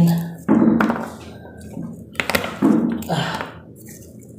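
Four dull thuds on a wooden tabletop as garlic cloves are struck and crushed by hand. The first thud, about half a second in, is the loudest; three quicker ones follow in the second half.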